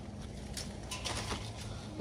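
Faint rustling of leaves and a few light clicks as small citrus fruits are pulled from a tree's branches.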